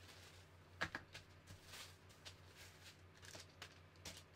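Faint handling of fabric pattern pieces being moved and laid out on a cutting table, with one sharp click a little under a second in, over a faint low hum.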